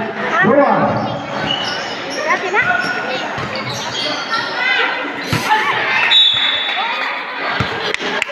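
Basketball bouncing on a hard court floor, with sneakers squeaking and crowd voices echoing around a large covered gym. A couple of the bounces stand out as sharp thumps late in the stretch.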